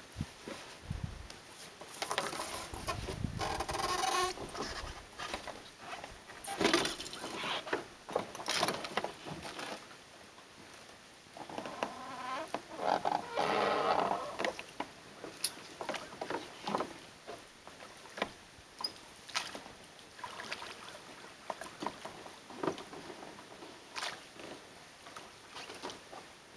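Small rowboat being boarded and rowed away from a dock: irregular knocks and creaks from the hull and oars. There are louder bouts about two to four and twelve to fourteen seconds in, then scattered sharp clicks of the oars as it pulls away.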